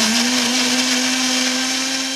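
Electric kitchen blender running steadily, homogenising donor stool with saline. Its motor hum edges slowly up in pitch over a dense whirring hiss.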